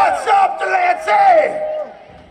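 Live audience shouting, whooping and cheering at the end of a punk rock song, in two loud bursts of voices.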